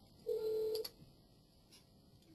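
A short electronic beep of two steady tones held together, about half a second long, ending with a faint click; near silence follows.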